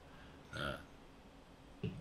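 A man's short in-breath during a pause in his talk, with a syllable of speech just before the end.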